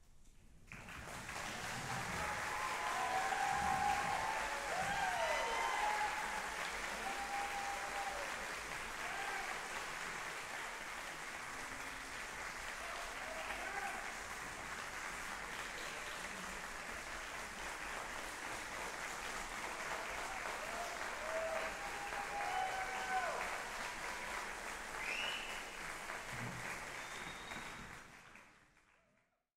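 Theatre audience applauding at the end of a concert band performance, with a few voices whooping and cheering over it. The applause swells over the first few seconds, holds steady, and cuts off at the end.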